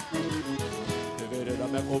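Instrumental passage of a gaúcho dance tune: acoustic guitar and held accordion notes over a pandeiro's jingles keeping a quick, steady beat.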